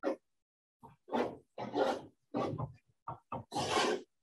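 A chalkboard being wiped with a long-handled board wiper: a series of short scrubbing sweeps, about six in four seconds, the last one longest and loudest.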